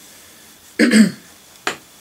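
A man coughs twice: a longer, rougher cough just under a second in, then one short sharp cough near the end.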